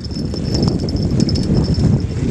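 Wind buffeting the microphone in an uneven low rumble, with small waves washing against a rocky shoreline.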